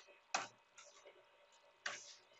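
Two faint computer keyboard keystrokes, about a second and a half apart.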